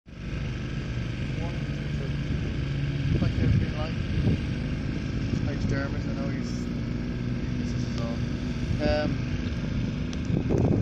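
A motorcycle engine running steadily, a low even hum, with a few brief snatches of voices over it.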